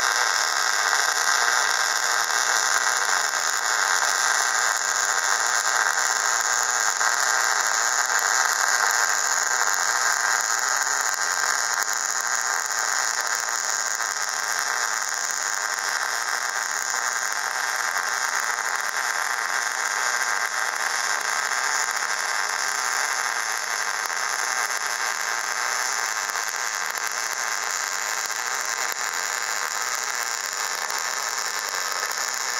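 Electric arc welding: the arc burns without a break, laying one continuous weld bead on steel, an even steady hiss.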